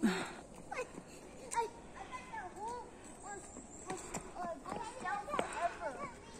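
Faint, indistinct voices, mostly children's, with no clear words: short scattered calls and snatches of chatter throughout.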